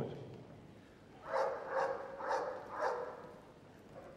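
A dog barking four times in quick succession, about two barks a second.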